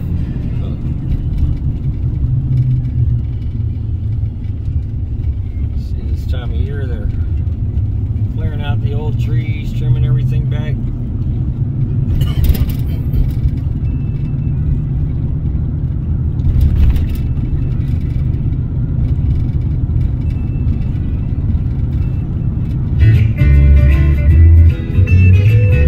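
Steady low road rumble inside a moving car's cabin. Short snatches of a voice come through about a quarter to halfway in, and there are a couple of brief knocks later on.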